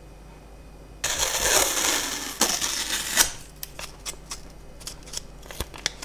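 Close-up handling of a miniature sculpture's yarn-fibre coat: a loud rustling scrape for about two seconds, then a run of small, sharp, irregular clicks.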